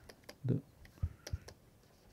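Light clicks and taps of a stylus pen on a tablet screen while words are handwritten, a quick cluster of them about a second in.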